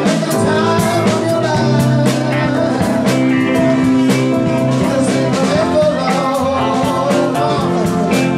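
Live soul-funk band playing a song, with electric guitars and a drum kit, loud and unbroken.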